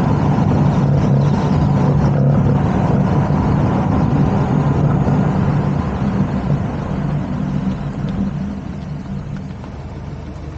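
Car driving on an open road: a steady low engine drone mixed with tyre and wind noise, getting quieter over the last few seconds.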